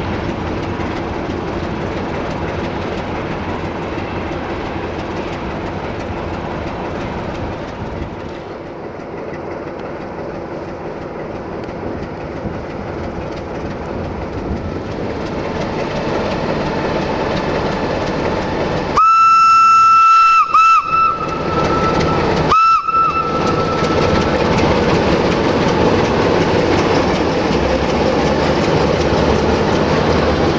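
CFR class 60 (060-DA) diesel-electric locomotive running light, its Sulzer twelve-cylinder engine growing louder as it draws close. About two-thirds of the way through, its horn gives a long single-pitched blast, a short second blast, and a third short blast about two seconds later. The horn blasts are the loudest sounds.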